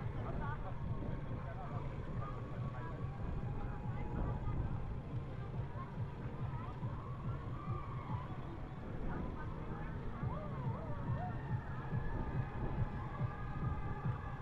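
Steady low rumble of wind over the microphone of a camera riding along on a moving bicycle, with the indistinct voices of the many cyclists around it in the background.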